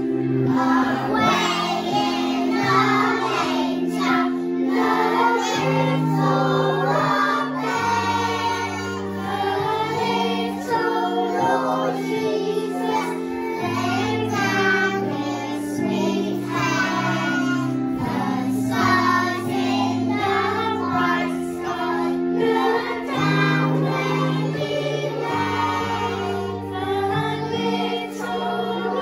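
A group of young children singing a song together over an instrumental accompaniment of held chords and a bass line.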